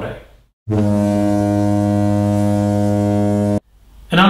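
A steady, low, buzzy horn-like tone held at one pitch for about three seconds, cutting in and out abruptly between two gaps of dead silence: an edited-in sound effect.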